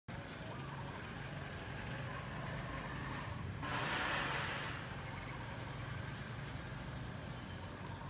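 Steady low engine hum, with a rush of noise that swells and fades about halfway through.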